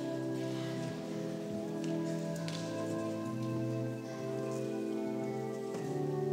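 Church organ playing slow, sustained chords that change every second or so, with faint shuffling and clicks of people moving.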